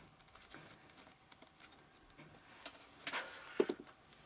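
Faint rustling and light tapping of hands handling paper flowers, lace and the card cover, with a few sharper clicks and a short knock a little after three seconds in.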